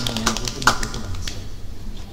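Scattered hand claps from a small audience, thinning out as the applause dies away.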